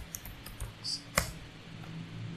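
Computer keyboard typing: a handful of quick keystrokes, with one louder key strike a little over a second in.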